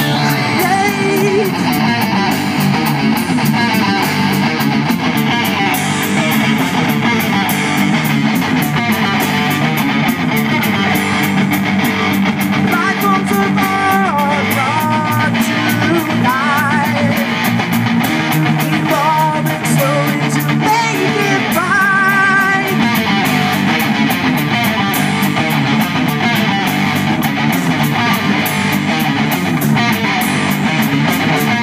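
A rock band playing live through amplifiers: electric guitars, bass and drum kit, with a singer at the microphone. Near the middle, a high lead line wavers in pitch.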